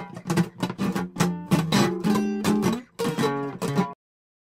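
Acoustic guitar strummed in a quick, even rhythm, with a brief break near the end, a few more strums, then a sudden stop.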